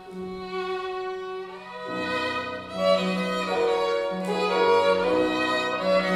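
Solo violin playing with piano accompaniment: a quieter held note for the first couple of seconds, then a louder passage of moving notes.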